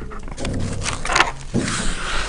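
Felt-tip marker writing on paper: a few short strokes as a small superscript is written.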